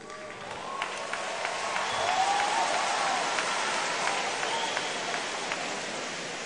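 A large congregation applauding: the clapping swells over the first couple of seconds and then holds steady, with a few voices calling out over it.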